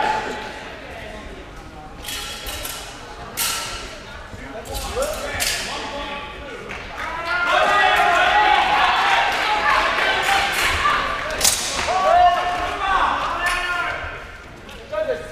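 People talking in a large, echoing sports hall, loudest in the second half, with a few sharp knocks in the first half.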